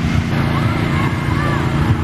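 Steady low rumble of road traffic, with faint distant voices over it.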